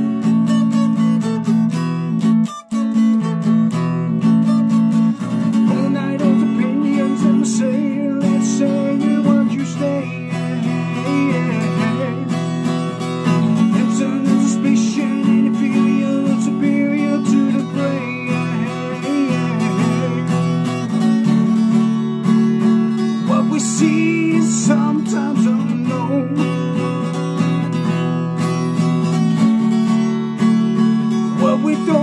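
Acoustic guitar strummed in a steady chord pattern, with a brief break about two and a half seconds in. A man's voice sings over it at times.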